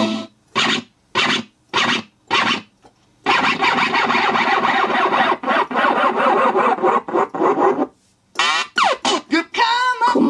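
Yamaha PSR-172 portable keyboard playing DJ-mode music through its built-in speakers. First come about four short stabs, roughly every half-second. Then a dense, continuous stretch of dance music runs for about five seconds, and quick sweeping, scratch-like sounds follow near the end.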